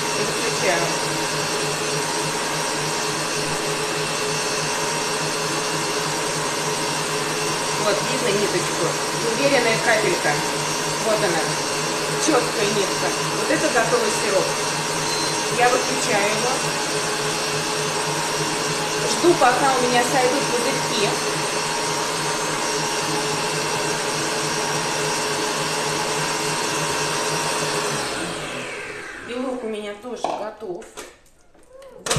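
Stand mixer running steadily at high speed, whisking albumin (egg white) for marshmallow. Near the end it is switched off and the motor winds down with a falling pitch.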